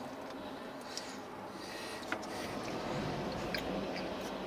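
Quiet eating sounds: a few faint clicks and small mouth noises from someone eating stew with a plastic spoon, over a low steady hum inside a car cabin.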